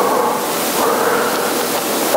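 A long breathy rush of air close on a handheld microphone, steady for about two seconds.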